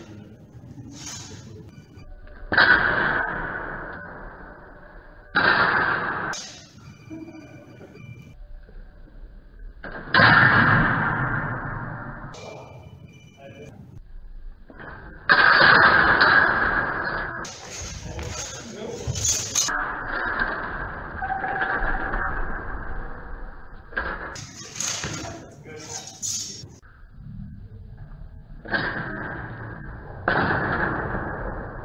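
Steel practice longswords striking and binding in a reverberant gymnasium: several sharp hits a few seconds apart, each trailing off in the hall's echo, with voices in the background.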